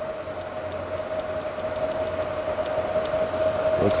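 Everlast PowerTIG 210EXT inverter TIG welder switched on and running through its power-up warm-up: its cooling fan rushes steadily under a constant whine.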